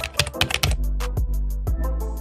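Typing sound effect: a quick run of key clicks, densest in the first second, over background music with a sustained low bass note.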